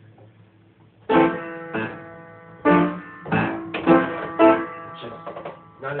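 Piano played: a few chords and notes struck one after another, starting about a second in, each ringing and fading before the next.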